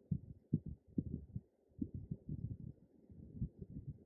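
Soft, irregular low thumps and rubbing, a few a second, as a fluffy makeup brush is swept and patted over the cheek.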